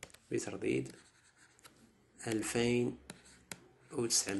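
A man's voice speaking in two short bursts, with a few faint sharp clicks in the pauses from a stylus tapping on a tablet screen as he writes.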